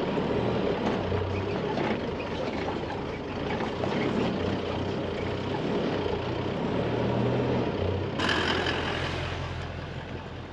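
Four-wheel drive heard from inside the cab as it crawls over a rough rocky track, a steady engine drone with rattling over the bumps. About eight seconds in it switches abruptly to an outside view: a Toyota LandCruiser V8 drives past through soft sand, its engine and tyres clearer and fading as it moves away.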